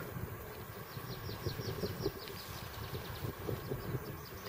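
A bird singing a quick run of about ten short, high, descending notes, starting about a second in, over a low rumble of wind.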